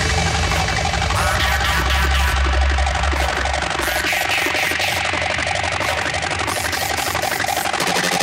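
Hard drum and bass played through a DJ mix. The heavy deep bass drops out a little under halfway through, leaving the fast drums and the upper parts running on.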